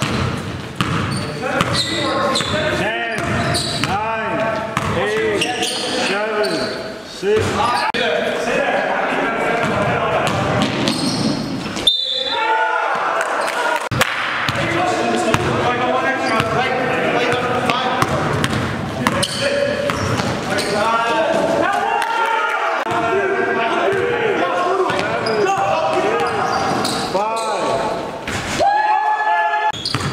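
A basketball being dribbled on a gym floor, bouncing again and again, with sneakers squeaking as players cut on the court.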